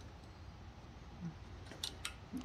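Quiet room tone with a steady low hum, and a small click near the end.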